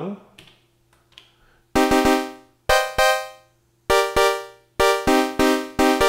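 Elektron Digitone FM synthesizer playing one-finger minor chords with an unfiltered, buzzy sawtooth patch made from a single operator fed back on itself. About a dozen short chord stabs, each starting sharply and fading quickly, begin about two seconds in.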